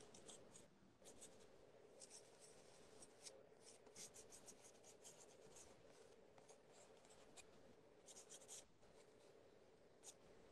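Faint, quick scratching strokes of a drawing tool on paper, coming in short irregular flurries as someone sketches, over a faint steady hum.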